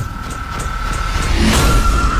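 Horror-trailer sound design over a black screen: a low rumble under a steady high tone, building in loudness, with a sharp hit at the start and a rushing swell about a second and a half in.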